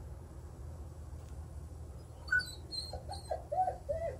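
Dog whining in a string of short, high whimpers that start about halfway through, the separation-anxiety whining of a dog left alone once its owner is out of sight.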